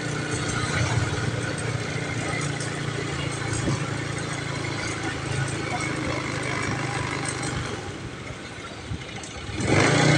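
A motorcycle engine running steadily at low speed, with people's voices mixed in. The engine sound fades about eight seconds in, and a louder rush of noise rises near the end.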